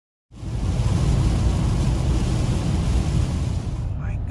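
Steady rush of heavy rain and wet-road tyre noise heard inside a car's cabin while driving on a rain-soaked highway, starting a moment in.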